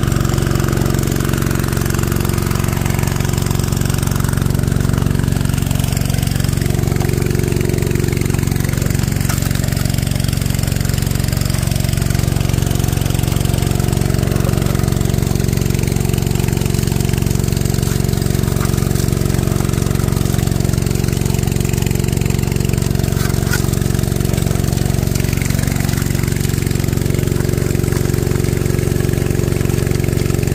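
Small gas engine of a gold-prospecting dredge running steadily at a constant speed.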